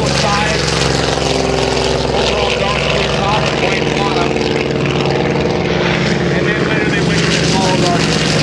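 Grumman F6F Hellcat's Pratt & Whitney R-2800 radial engine and propeller at full takeoff power, a steady loud drone as the fighter lifts off and climbs away. A second Hellcat's engine joins in near the end as it lifts off behind the first.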